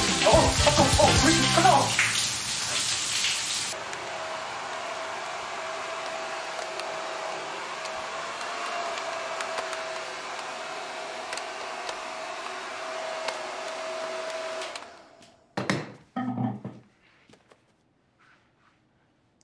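Background music fading out over the first couple of seconds, then a hand-held hair dryer blowing steadily with a thin whine, switched off about 15 seconds in. A couple of brief sounds follow near the end.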